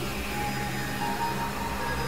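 Experimental electronic synthesizer drone: a dense, noisy wash over low droning tones, with thin steady high tones layered on top. A new steady tone enters about a second in.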